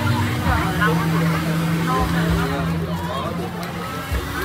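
Handheld electric heat gun running steadily, its fan motor giving a constant hum and rush of air, over the chatter of voices around it.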